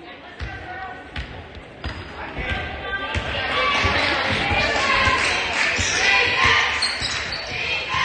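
Basketball dribbled on a hardwood gym floor, a steady run of bounces, with voices in the large gym growing louder about three seconds in.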